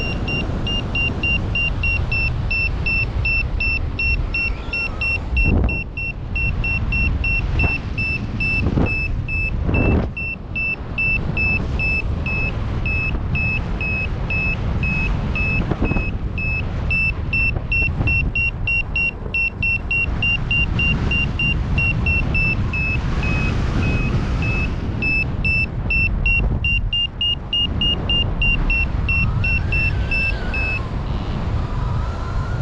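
Paragliding variometer beeping rapidly in short, evenly spaced high beeps, the climb tone that signals the glider is rising in lift; the beeps pause briefly past the middle and come back slightly higher near the end. Under it, wind rushes on the microphone.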